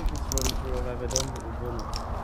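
Footsteps crunching and scraping on grit and loose stones over a concrete path, several uneven steps.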